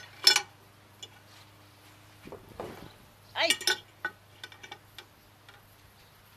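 Metal barbecue tongs clinking: a sharp, ringing clink just after the start, then a few lighter clicks about four to five seconds in.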